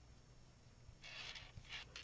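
Near silence, with a faint, soft rustle of folded fabric being pressed flat by hand starting about a second in.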